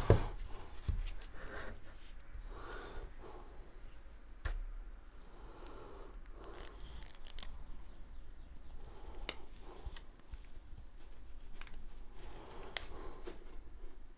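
Hard plastic parts of a smartphone gimbal being handled: scattered sharp clicks and soft rubbing as its phone clamp and motor arm are moved and turned over in the hands.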